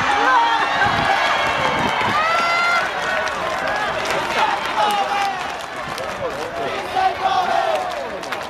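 Many voices shouting and calling over one another, louder for the first three seconds and then easing a little.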